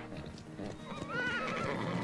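A horse whinnying about a second in, a short call that rises and falls several times, over hoofbeats on grass as horses trot about.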